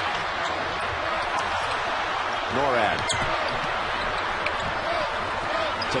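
Steady, loud noise from a packed arena crowd at a close basketball game, with a basketball being dribbled on the hardwood court. A short gliding squeal comes about halfway through.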